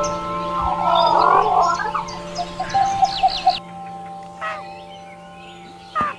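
Background music with long held notes, over a short call from a domestic fowl about a second in and quick, high bird chirps a little later.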